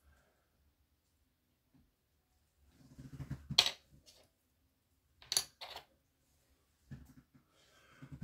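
Small hard plastic model-kit parts being handled on a cutting mat. After a couple of seconds of near silence comes a short scrape ending in a sharp click, then two more quick clicks a little after five seconds.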